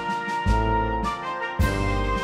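Ceremonial band music, with brass holding sustained chords over a strong bass. The chords change sharply about half a second in and again near the end.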